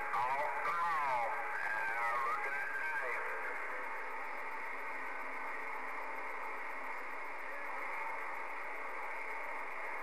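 Galaxy CB radio receiver hissing with band static, narrow-band and steady. In the first three seconds a faint, garbled distant voice wavers through the static.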